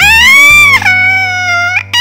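High-pitched cartoon voice wailing in one long wordless cry, the pitch swooping up at the start, dropping a step partway through and swooping up again near the end, over background music.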